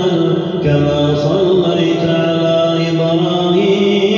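A man's voice chanting Arabic recitation into a handheld microphone, in long held melodic notes that step up and down in pitch.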